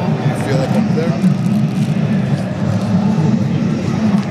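Indistinct, murmured talk over a steady low rumble.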